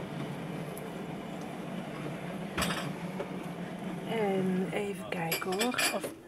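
Crockery and cutlery clinking: one sharp clink about two and a half seconds in and a quick run of clinks near the end, over a steady low room hum and faint background voices.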